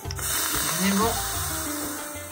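Green tea boiling hard in a small stainless-steel Moroccan teapot on a gas flame, a steady fizzing bubble as the foam rises: the sign that the tea is ready. Background music plays underneath.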